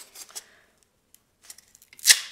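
Faint, scattered clicks and rubbing from two glued rigid foam insulation blocks being gripped and twisted by hand, with quiet gaps between them.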